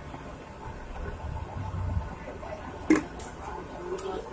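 Street-stall kitchen sounds: a low background rumble that swells briefly, and two sharp knocks close together about three seconds in as the cook works dough on a cutting board beside a griddle.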